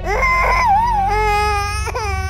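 A baby crying: a wavering cry that dips in pitch, then a longer held cry, over a steady low hum.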